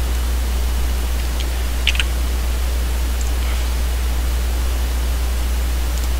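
Steady hiss with a constant low electrical hum from a computer microphone's noise floor, broken by a few faint, short clicks.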